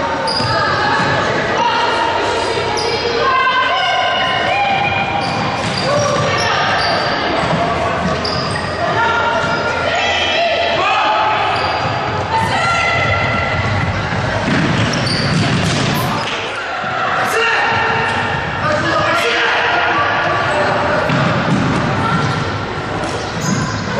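Futsal match play on a hardwood sports-hall floor: the ball being kicked and bouncing, with players calling out to each other, all echoing in the large hall.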